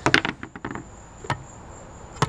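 Light clicks and taps as cut peach pieces are picked up off a table and dropped into a blender jar, a cluster of them in the first second and one more a little later. Under them is a faint steady insect buzz.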